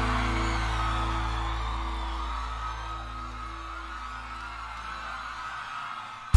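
A live band's closing chord held and ringing out after a final accent, the low sustained notes slowly fading away.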